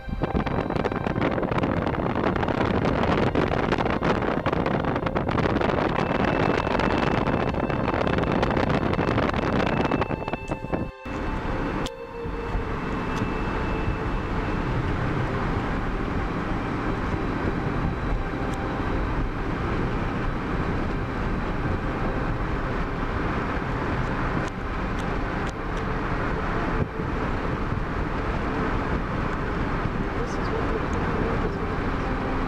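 Steady road and engine noise heard from inside a moving car, with a brief dropout about eleven seconds in.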